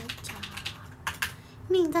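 A run of light, irregular typing clicks, several a second. A woman's voice starts speaking near the end.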